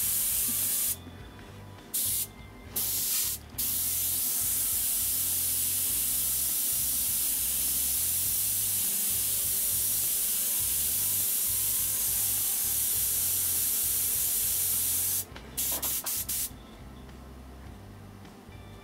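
Airbrush hissing as it sprays, still partly clogged. The hiss stops about a second in and comes back in two short bursts, then runs steadily for about eleven seconds. It ends with a few quick trigger bursts.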